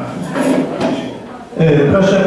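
Low murmur of people talking in a large meeting room, with a few short knocks and handling clunks. About one and a half seconds in, a man starts speaking loudly close to the microphone.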